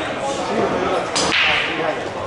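A single sharp crack of pool balls colliding about a second in, with a short fading hiss after it, over the chatter of a busy pool hall.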